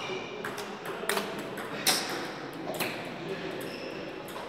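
Table tennis ball clicking off the paddles and table in a short rally, a few sharp hits about a second apart, the loudest near the middle, ringing in a large hall.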